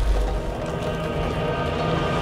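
Dramatic score from the TV episode's soundtrack, with held sustained tones over a deep low rumble.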